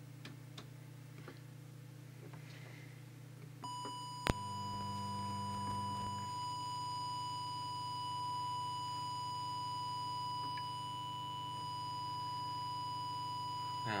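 Steady 1 kHz test tone from an audio oscillator, used to modulate the CB transmitter while its audio deviation is set. It starts about four seconds in, a sharp click follows just after, and a low hum runs underneath.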